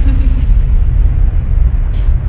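Loud, steady deep rumble of a horror-trailer sound effect, with a faint wavering tone over it in the first half second.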